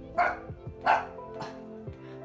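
A puppy barking: two sharp, loud yaps about 0.7 s apart, then a fainter one, over background music.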